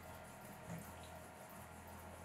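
Faint rubbing of fingertips on a soaked paper print stuck to packing tape, working the wet paper pulp off a packing-tape transfer, over a low steady hum.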